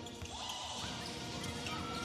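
Live basketball game sound: a basketball being dribbled and sneakers squeaking briefly on the hardwood court, over faint arena music.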